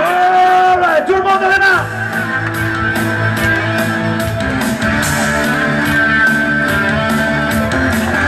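Live rock music: a voice holds long, wavering notes over the first two seconds, then a rock backing of electric guitar, bass and drums carries on with a steady beat.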